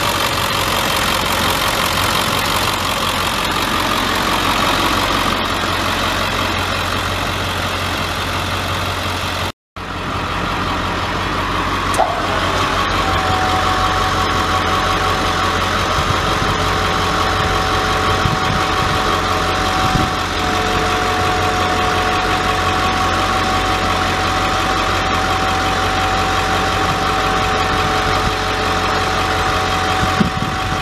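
Ford 7.3-litre turbo-diesel V8 running steadily at idle. The sound drops out for a moment just before ten seconds in, and from about twelve seconds a steady high whine runs over the engine.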